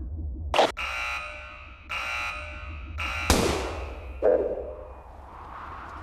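Two steady buzzer tones of about a second each, like a test countdown, then a single sharp starter-pistol shot, the loudest sound, followed by a rising whoosh. A short click comes just before the first buzz.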